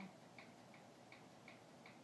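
Near silence: room tone with faint, even ticking, close to three ticks a second.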